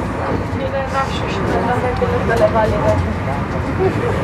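Steady rumble of a passenger train running at about 150 km/h, heard from inside the carriage, with voices talking faintly over it.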